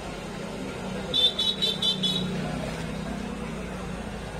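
A high-pitched vehicle horn beeps about five times in quick succession about a second in, over a steady low hum of street traffic.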